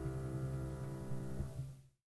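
Closing chord of a jazz piano track, piano with a low bass underneath, ringing on and fading out to silence near the end.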